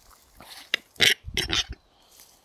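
Male western capercaillie (wood grouse) giving its display song at close range: a sharp click, then loud, harsh rasping notes over the next second.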